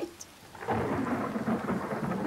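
Thunder rumbling over steady rain, starting about two-thirds of a second in and carrying on.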